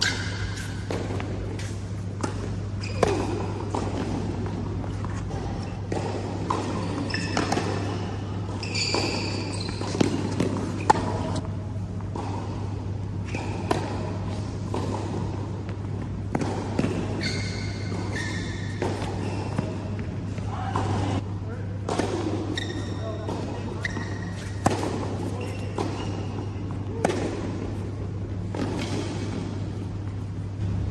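Tennis rallies on an indoor hard court: repeated sharp strikes of the ball off rackets and its bounces, echoing in a large hall over a steady low hum.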